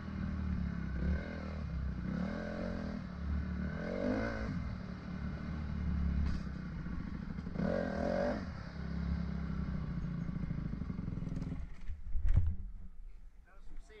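Dirt bike engine running at low trail speed, heard from the rider's helmet, with several brief throttle swells. About eleven and a half seconds in the engine note falls away as the bike comes to a stop, and a single sharp knock follows shortly after.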